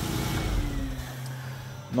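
Audi TT's 3.2 V6 engine being switched off: it runs down with a falling tone and stops about a second in. It runs without the hiss that a torn breather-separator diaphragm in the old valve cover had caused.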